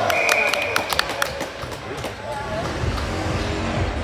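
Ice hockey rink sounds: a referee's whistle blast just after the start, with sharp clacks of sticks and puck against the ice and boards and players' shouts through the first second or so; music starts playing over the rink's speakers near the end.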